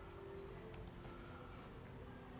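Two quick computer mouse clicks a little under a second in, over faint room tone with a steady low hum.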